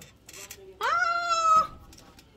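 A single high-pitched, drawn-out call that rises at first and is then held steady for about a second.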